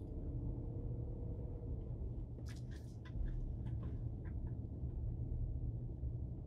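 Car cabin noise while driving slowly: a steady low rumble of engine and tyres. About two and a half seconds in, a brief run of small irregular ticks and squeaks lasts under two seconds.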